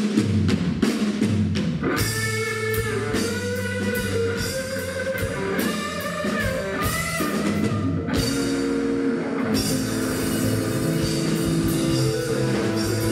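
Live electric blues band: a Telecaster-style electric guitar plays a lead line over a drum kit, all kicking in together at once at the start. The guitar holds long, wavering bent notes through the middle, and the cymbals drop out briefly near the end before the band carries on.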